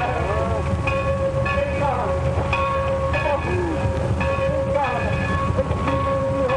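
Steam train in a rail yard: a steady heavy rumble with ringing metallic tones that break off and restart about every half second, and scattered short squeals.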